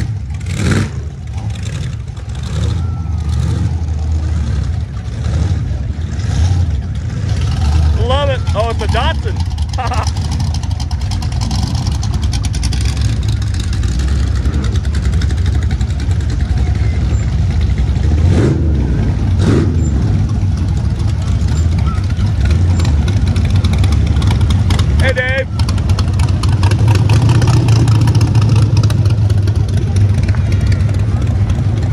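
Classic cars, hot rods and rat rods driving slowly past one after another, their engines rumbling steadily and growing louder near the end as another rat rod approaches. Brief voices of onlookers come in twice, and there are two sharp pops or knocks a second apart about two-thirds of the way through.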